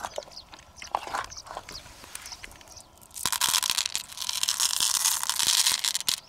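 A handful of small beads poured from a hand onto a heap of beads in an open mussel shell: a few light clicks, then a dense crackling clatter from about three seconds in that cuts off at the end.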